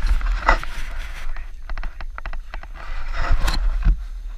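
Low rumble of wind and handling on a camera, with scraping noises and a quick run of sharp clicks about halfway through.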